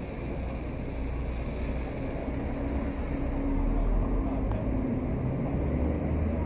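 Street traffic at a city intersection: bus and car engines running as they pass, a low rumble that swells loudest about four seconds in.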